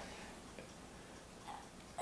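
Quiet room tone with a couple of faint, brief small sounds, one about half a second in and one about a second and a half in.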